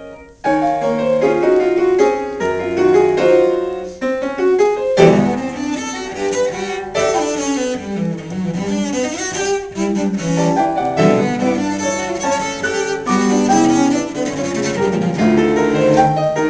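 Cello and grand piano playing a sonata together: after a brief break the two come in about half a second in, and the music grows busier from about five seconds in.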